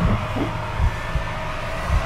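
Low, dull thuds at uneven intervals over a steady droning hum, from the film's soundtrack.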